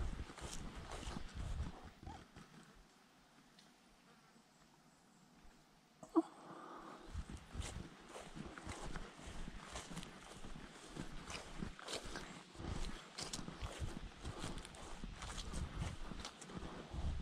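Footsteps of a person walking on a grassy dirt track, about two steps a second. The steps stop for a few seconds, a single short sharp sound comes at about six seconds, and the walking then resumes.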